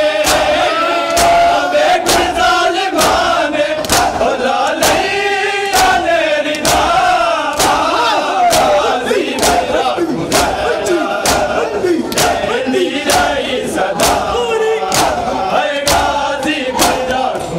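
A crowd of men chanting a mourning lament (noha) together, with the sharp slaps of hands striking bare chests in unison (matam) keeping a steady beat.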